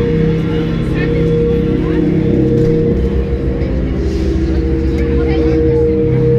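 Dark ambient horror soundtrack from a scare zone's loudspeakers: sustained low drone notes over a deep rumble, shifting pitch every few seconds, with crowd voices underneath.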